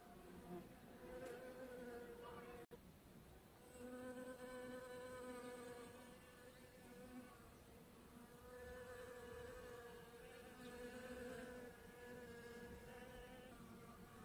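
Bees buzzing faintly, a low hum that swells and fades several times as they fly among the flowers.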